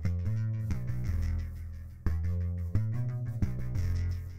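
Electronic beat playing back in FL Studio Mobile, led by a bassline whose notes change about every half to three-quarters of a second. The bass is panned hard to one side by the Spacer plugin's pan control, which starts to be turned back toward centre.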